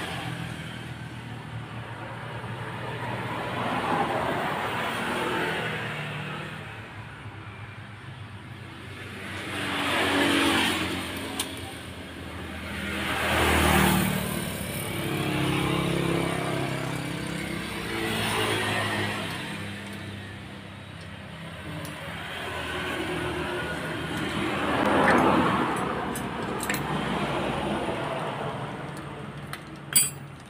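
Road vehicles passing by one after another, about six in all, each swelling and fading over a couple of seconds. A few faint clicks sound between them.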